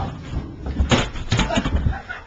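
A kick scooter crashing at the end of a run and clattering onto the floor: several sharp knocks in quick succession, starting about a second in.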